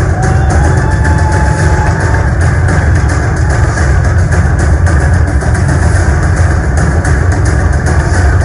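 Loud music for an open-air stage musical, played over loudspeakers and heavy in the bass, with one held high note that slides up and holds for about two seconds near the start.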